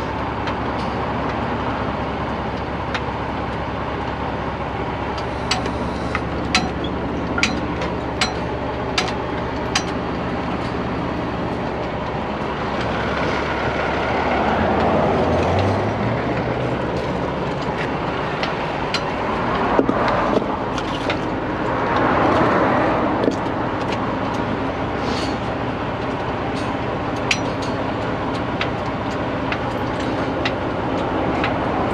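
A heavy truck engine idling steadily, with vehicles passing on the road twice in the middle of the stretch. A run of sharp clinks and knocks comes early on.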